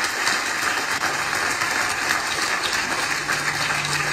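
Audience applauding steadily, heard played back through a laptop's speakers.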